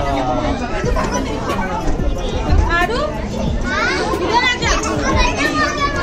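Background chatter of visitors, children's voices among them, several people talking and calling out over one another.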